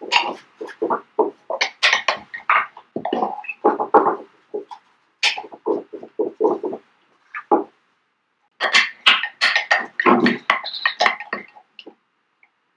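Paintbrush being rinsed in a small glass jar of water: quick, irregular bursts of swishing and clinking as the brush is worked against the glass, with two brief pauses partway through.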